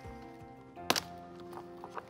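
A snap fastener on a car seat's fabric seat pad popping open once, a sharp click about a second in, over soft background music.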